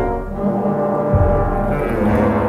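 Background music: sustained brass-like chords with a low drum hit about a second in.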